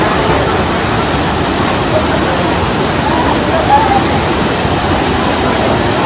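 Waterfall tumbling down rock ledges into a plunge pool: a loud, steady rush of falling water.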